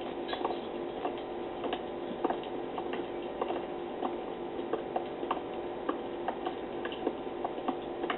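Light clicks, two or three a second but unevenly spaced, over a steady low hum.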